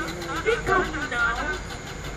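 A voice speaking on stage, rising and falling in pitch, over a steady low hum.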